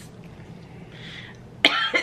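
A quiet moment with a faint breath, then a sudden loud cough about one and a half seconds in, from a throat irritated by the spices of a chili-flavoured meat stick.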